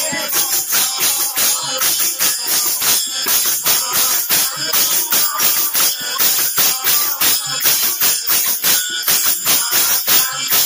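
Live folk-theatre accompaniment music: a fast, steady beat of percussion with jingling metal, with little melody over it.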